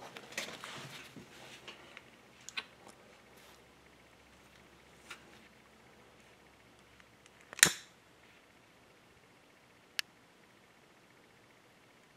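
Mostly quiet glove-and-part handling with a few isolated clicks; the loudest, about two-thirds of the way through, is a sharp click with a brief hiss as a long utility lighter is sparked alight to heat the thermal overload's bimetal disc.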